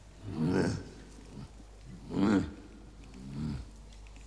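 Three short animal-like vocal calls, the loudest about two seconds in.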